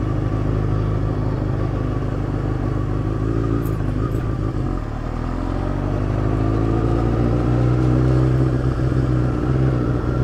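Sport motorcycle's inline-four engine running at low road speed. The note sags briefly about halfway through, then rises steadily as the bike pulls again before levelling off.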